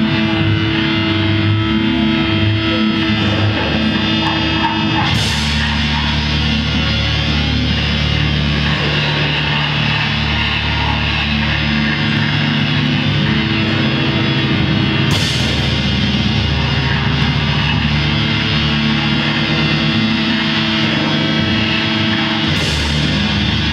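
Live heavy instrumental rock from a guitar, drums and noise-piano trio: loud, dense distorted guitar over drums with sustained droning tones, with sudden crashes about five seconds in and again about fifteen seconds in.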